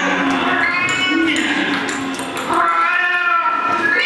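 Drawn-out, meow-like wailing calls, several in a row, each gliding up and down in pitch; the loudest starts about two and a half seconds in.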